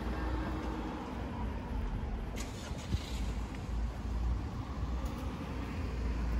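Street ambience: a steady low rumble of road traffic, with a short higher hiss about two and a half seconds in.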